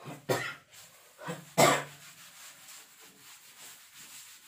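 A man coughing twice, about a second and a half apart, the second cough louder.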